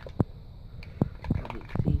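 Foil lid being peeled back by hand from a plastic yogurt pot, giving a few short, sharp crinkles and clicks.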